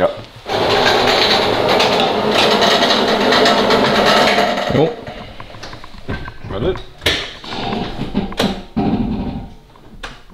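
A machine's motor runs loudly and steadily for about four seconds, then winds down with a falling pitch. A few sharp knocks follow.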